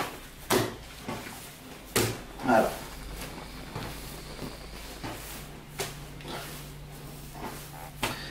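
Brioche dough slapped down onto a worktop by hand as it is kneaded. There are about six dull slaps at irregular intervals, with a pause between about three and five and a half seconds.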